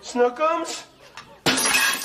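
A wooden breakfast tray with a glass and a mug dropped to the floor, a sudden loud crash of breaking glass and china about one and a half seconds in.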